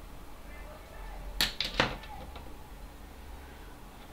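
Two sharp clicks less than half a second apart, about a second and a half in, with a few faint ticks between them, from tools being handled at the soldering bench. A low steady hum runs underneath.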